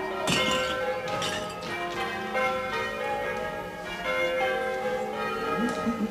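Church bells ringing, several bells struck one after another with their tones overlapping and ringing on.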